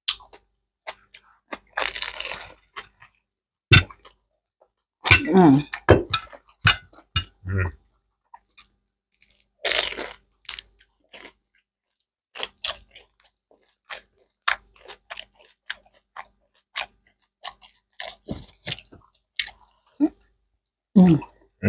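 Close-up crunching and chewing of crisp Hmong egg rolls: scattered sharp crackles, with the loudest crunchy bites about two seconds in and about ten seconds in.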